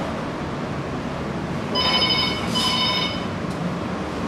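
Two short ringing electronic tones in quick succession, about two seconds in, over a steady background noise.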